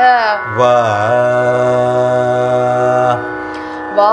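Carnatic singing in raga Anandabhairavi: a woman's voice finishes a sliding, ornamented phrase, then a man's voice sings one long held note from about half a second in until about three seconds, over a steady drone.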